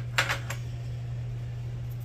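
A few light clicks shortly after the start as engine parts are handled on the workbench, then only a steady low hum.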